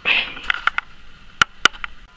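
Handling noise on a table: a brief rustle of paper, then a string of light clicks and two sharper taps as a plastic shamisen bachi and paper are put down.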